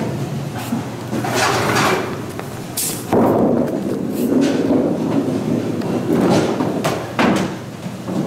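A candlepin bowling ball is released onto the wooden lane with a knock, rolls with a steady rumble for about four seconds and ends with sharp thuds at the far end, knocking down no pins.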